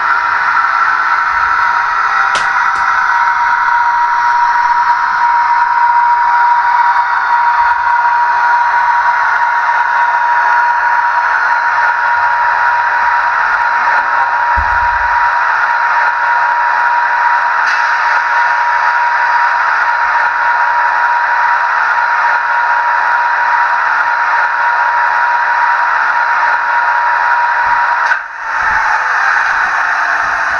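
Model electric locomotive sound: a loud, steady whine over a hiss, with a low thump about halfway through and a short break near the end.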